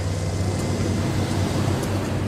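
Wheel tractor scraper's diesel engine running steadily, a constant low rumble.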